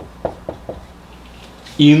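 Marker pen on a whiteboard: about four short taps as letters are written, spaced a quarter-second or so apart in the first second.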